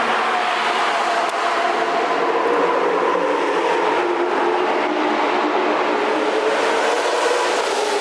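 Loud, steady car engine and road noise, its engine tones drifting slowly in pitch without sharp revs. It starts and stops abruptly.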